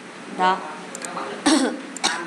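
A woman's voice says a short word, then gives a brief cough about a second and a half in.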